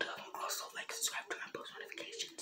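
Only speech: a boy talking in a whisper close to the microphone.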